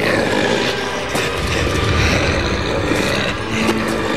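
A Lurden, a large cartoon monster, roaring over background music.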